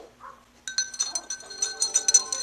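A spoon stirring sugar into a tall glass of water, clinking rapidly against the glass with a ringing tone, starting a little under a second in.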